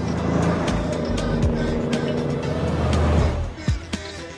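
Soundtrack music with a steady beat over the engine of a sports car driving past, which swells and then drops away about three seconds in.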